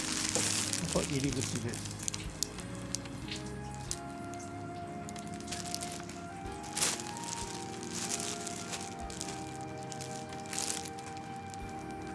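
Fabric cat tunnel and glittery stocking rustling and crinkling as a cat scrambles in them, busiest in the first two seconds, then a few short sharp rustles. Soft background music with held notes plays throughout.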